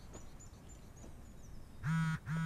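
Quiet room with faint high chirps, then near the end a short, loud nasal hum from a person's voice.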